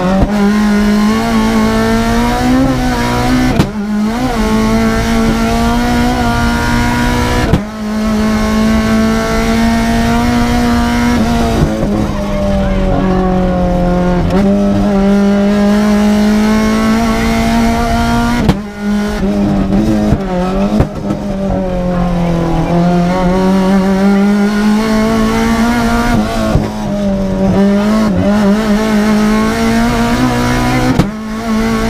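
Renault Clio Williams rally car's four-cylinder engine heard from inside the cabin, revving hard at stage pace, its note rising and falling as the car accelerates and slows. The note breaks off briefly several times at gear changes.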